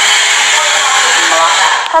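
Hand-held hair dryer running steadily, blowing air onto hair being styled with a round brush.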